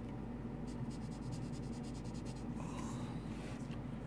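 Brush pen scratching on paper in a rapid run of short strokes, about ten a second, as black ink is hatched into a small drawn box. A steady low hum sits underneath.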